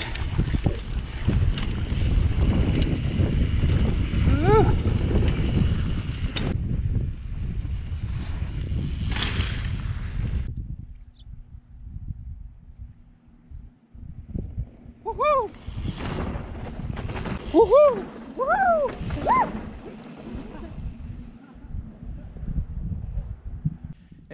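Mountain bike riding down a dirt trail with wind rumbling on the camera's microphone, which drops away after about ten seconds. Later a few short whoops and a brief hiss of tyres on dirt as riders pass.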